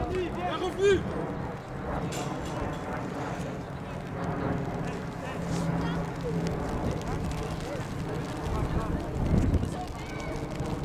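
Indistinct voices of children and adults calling across an outdoor football pitch, with a few high shouts about a second in. A low rumble on the microphone grows strongest near the end.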